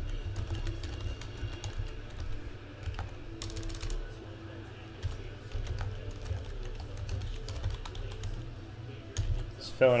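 Typing on a computer keyboard: irregular keystrokes, with a quick run of keys about three and a half seconds in, over a steady low hum.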